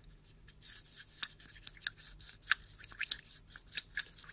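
Paintbrush stirring a pigment sludge wash in a small glass jar: irregular light clicks and scrapes, several a second, as the brush knocks and drags against the glass.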